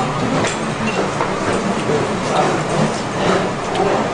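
Steady restaurant background din with scattered light clinks of tableware.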